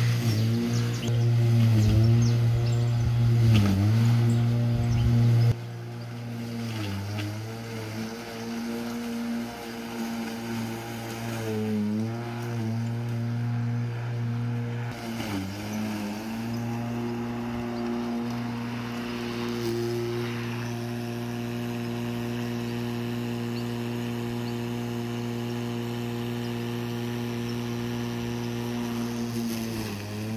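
Corded electric lawn mower running with a steady hum. Its pitch sags briefly several times in the first half as the motor is loaded by long, thick grass. It grows quieter after about five seconds.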